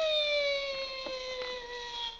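Overhead store cash carrier sent along its wire: a steady whine that slowly falls in pitch, with a couple of light clicks about a second in.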